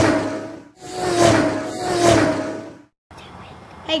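Intro sound effect: a whooshing swell that rises and falls a few times, carrying a low hum that sags slightly in pitch. It cuts off suddenly about three seconds in, leaving faint hiss.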